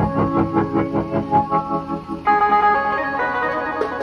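Electronic keyboard playing a melody in an organ voice over a steady beat, with a new phrase starting about two seconds in.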